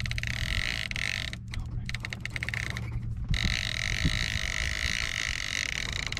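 Steady low drone of the sailboat's engine running, under a higher steady hiss, with stretches of fast clicking from the conventional fishing reel as a hooked fish is played.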